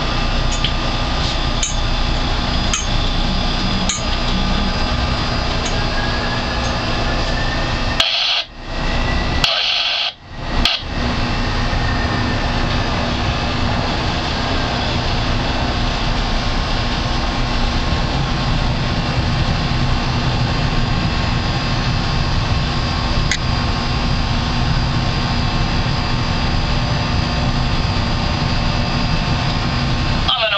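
A boat's engine running steadily under way, mixed with wind and water noise. The sound drops out suddenly twice, briefly, about eight to ten seconds in.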